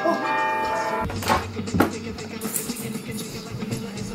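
A chime of several bell-like tones sounding one after another and held together, cutting off about a second in, followed by two sharp knocks.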